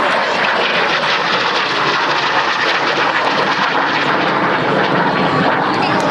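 Kawasaki T-4 jet trainer flying overhead, its twin turbofan engines giving a loud, steady jet noise.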